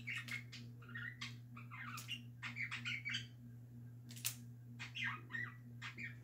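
Faint, irregular clicks and rattles of a handheld plastic K'NEX claw model being worked by hand.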